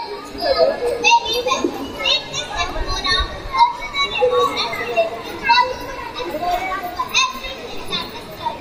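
Several children's voices talking and calling over one another, high-pitched and continuous.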